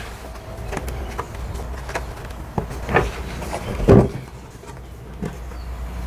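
A snap-on plastic lid fitted with a Dust Deputy cyclone being pried off a 5-gallon plastic bucket: a handful of irregular plastic knocks and clicks, the loudest about four seconds in.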